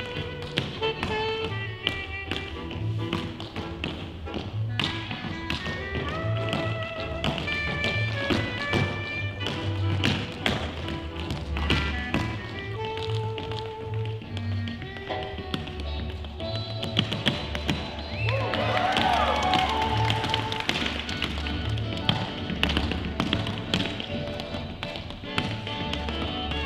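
Tap shoes striking a dance floor in fast, rhythmic patterns of clicks and heel drops, over swing jazz music.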